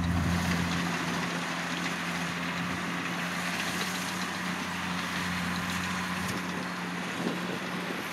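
Kubota DC60 rice combine harvester running at working speed as it cuts rice: a steady diesel engine drone with a constant hiss over it.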